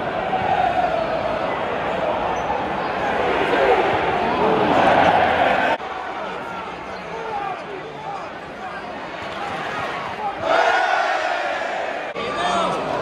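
Football crowd in the stands chanting and shouting, many voices at once. There is a sudden cut about six seconds in, after which the crowd is quieter, then a swell of crowd noise near the end.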